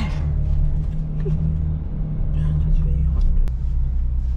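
Ferrari engine running at low revs, heard inside the cabin as the car rolls slowly off at pit-lane speed: a steady, deep drone that barely changes pitch.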